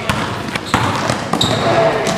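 A basketball bouncing on a wooden gym floor: three sharp bounces a little over half a second apart.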